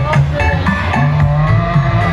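Loud music with a heavy, sustained bass line, played through a large parade sound system.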